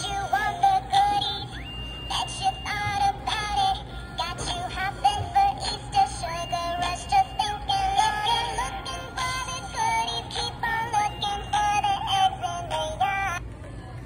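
Gemmy 'Hands in the Air Bunny' animated Easter plush playing its song: singing over music with several long held notes, which stops near the end.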